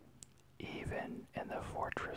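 Whispered speech: a voice quietly reading a line aloud, starting about half a second in.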